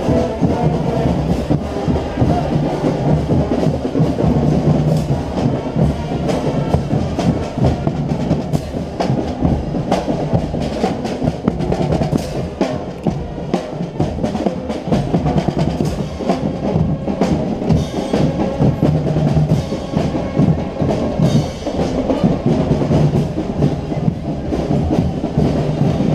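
A school marching band playing as it passes: trombones and other brass over bass drums, snare drums and crash cymbals, with a dense run of drum strokes throughout.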